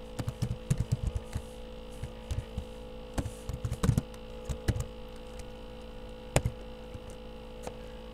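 Computer keyboard keys clicking in scattered short clusters as an equation is typed, over a steady electrical mains hum.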